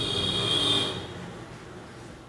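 Marker pen squeaking on a whiteboard as words are written: a steady high squeak for about the first second, then only faint room noise.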